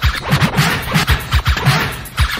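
Vinyl record scratching on a turntable, quick back-and-forth strokes cut over a drum beat with heavy kick-drum hits.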